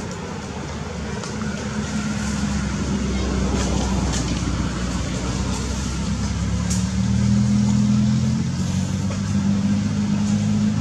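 A motor engine running, with a steady low drone that grows louder over the first few seconds and is loudest a little past the middle.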